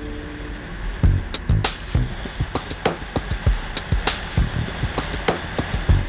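Background music: after a quiet start, a drum beat of low kicks and sharp snare-like hits comes in about a second in and carries on.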